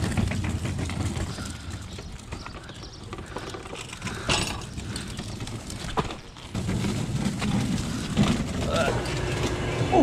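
Loaded hand truck rolling over pavement: a steady rumble from its wheels with rattles and clicks, a little quieter for a few seconds mid-way.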